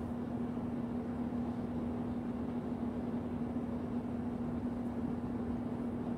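Steady background hum with a constant low tone over even room noise, unchanging throughout.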